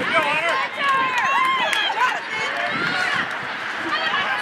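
Several voices shouting and calling out across an outdoor soccer field, overlapping and rising and falling in pitch, with no clear words.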